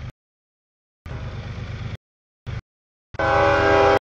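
Diesel freight locomotive rumbling past, then its air horn sounding a loud chord of several steady notes from about three seconds in. The audio cuts out to dead silence several times in between.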